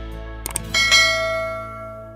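A quick double click, then a notification-bell chime that rings on and fades away over about a second and a half: the sound effect of a subscribe button and bell icon being clicked.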